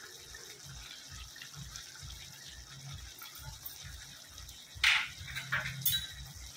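Chicken gravy simmering in a steel pan, with soft, irregular bubbling and a faint sizzle. Near the end come two short scraping sounds.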